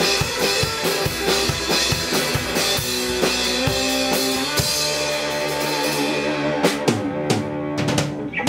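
Rockabilly band playing live: a drum kit keeps a fast, driving beat under a hollow-body electric guitar lead. In the second half the steady beat gives way to long held notes and a few sharp drum hits near the end.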